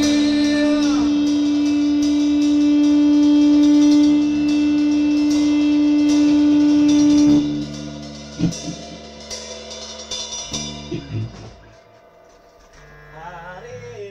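A live rock band of drum kit, electric guitar and bass holds a loud final chord with repeated cymbal and drum hits, cut off sharply about seven seconds in. Scattered quieter drum hits and stray guitar and bass notes follow and die away.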